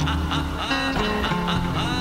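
Instrumental hip-hop beat from a beat tape: a steady deep bass line under a pitched melodic sample and drums.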